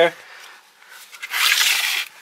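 Rustling, scraping noise close to the microphone, starting about a second and a half in and running on: handling noise as the camera is moved.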